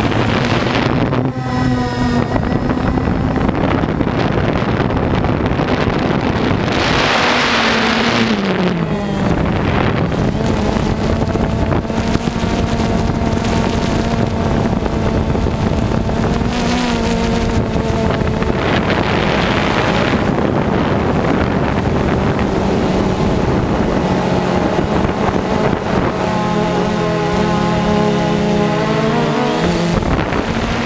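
DJI Phantom 2 quadcopter's electric motors and propellers humming steadily in flight, heard from on board, with gusts of wind on the microphone about seven and nineteen seconds in. The pitch of the hum drops about eight seconds in and wavers near the end as the motor speeds change.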